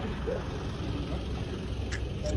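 Pickup truck driving slowly past at close range, its engine a steady low rumble.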